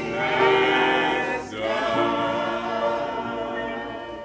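Church choir singing a gospel song, the voices slowly dying away toward the end.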